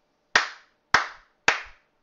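One person clapping hands in slow applause: three sharp claps about half a second apart.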